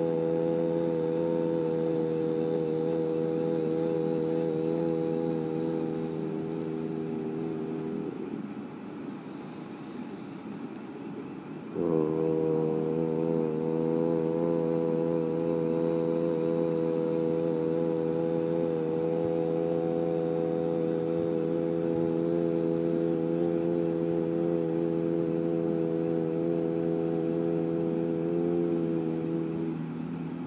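A man chanting a mantra as one long, steady low tone. He breaks off about eight seconds in, starts again about four seconds later and holds it until near the end.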